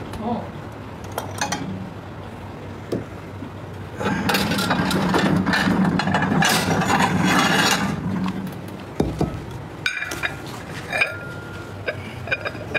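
A man eating fried red tilapia dipped in sambal belacan: a muffled, voice-like stretch for a few seconds in the middle, then a few light clicks and clinks of dishes or cutlery near the end.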